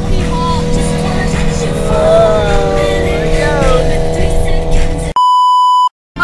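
Music with a gliding melody over a low rumble, then, about five seconds in, an abrupt cut to a steady 1 kHz test-tone beep lasting under a second: the reference tone that goes with TV colour bars.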